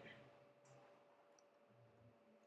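Near silence: room tone with a few faint clicks from a computer mouse or keyboard.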